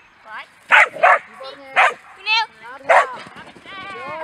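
A dog barking excitedly: four short, sharp barks about a second apart, with a high-pitched excited voice between them.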